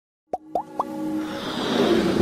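Intro sting of sound effects and music: three quick rising bloops, about a quarter second apart, then a whoosh that swells up over held music tones.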